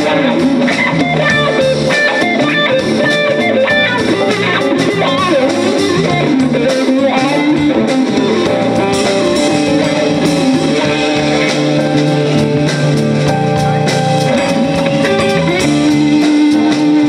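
Live rock band playing an instrumental passage: electric guitar lead lines over bass guitar and drum kit.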